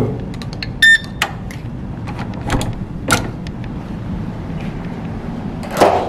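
Electronic key-card hotel door lock giving one short, loud beep as the card is read about a second in, followed by a few sharp clicks of the latch and handle as the door is unlocked and opened.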